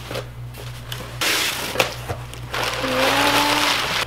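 Brown kraft packing paper rustling and crinkling as it is pulled out of a cardboard box, starting about a second in, with a few sharp crackles. A faint steady tone comes in near the end.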